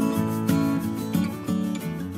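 Background music led by a strummed acoustic guitar, with a new chord about every half second.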